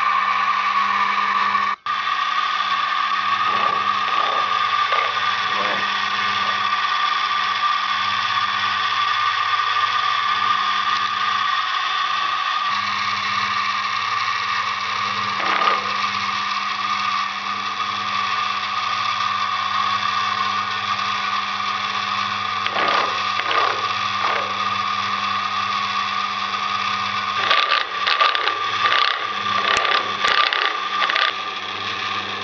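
Electric motor of a lathe-mounted milling attachment running steadily with a constant whine, spinning a toothed disc milling cutter. Near the end the cutter starts cutting slots into a steel nut held in the lathe chuck, adding irregular rasping strokes over the hum.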